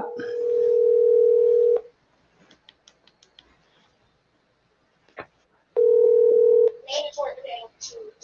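Telephone ringback tone of an outgoing call: a steady tone for nearly two seconds, a gap of about four seconds, then the tone again for about a second.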